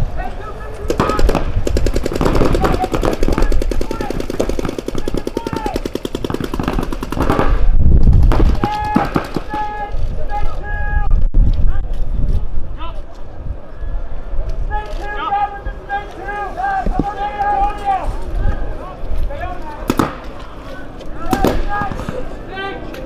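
Paintball markers firing in rapid, continuous strings of shots for the first several seconds, then shouting voices take over.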